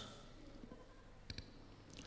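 Near silence: a pause between spoken lines, with a faint quick double click a little past the middle.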